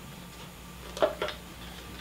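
Plastic humidifier lid and canister being handled, with two short clicks about a second in, over a low steady hum.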